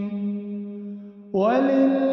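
Quran recitation by a qari: a long held note closing a verse trails off, then about a second and a half in a new verse begins with a rising melodic phrase, sung with echoing reverberation.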